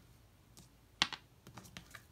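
Tarot cards being handled: one sharp click about a second in, followed by a few lighter clicks.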